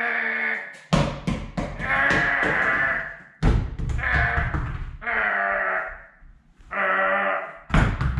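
Foam rollers dropping onto a tile floor with three deep knocks, about a second, three and a half seconds and nearly eight seconds in. Between the knocks come held, wavering voice-like notes, each about a second long, with a bleating quality.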